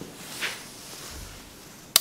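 Handling noise as a gloved hand lifts and turns a heavy electric nibbler, with a soft rustle about half a second in and a sharp click just before the end.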